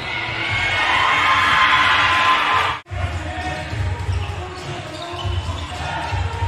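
Crowd noise in a basketball hall swells for about three seconds and cuts off abruptly, followed by a basketball bouncing repeatedly on a hardwood court under a murmur of voices.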